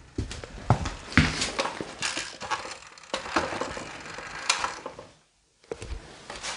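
Irregular footsteps, clothing rustle and knocks from a handheld camera being carried and bumped against furniture, with the sound cutting out for a moment about five seconds in.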